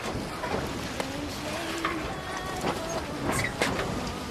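Wind buffeting the microphone on a moving boat, heard as a steady crackling rush with low rumble, over choppy harbour water splashing.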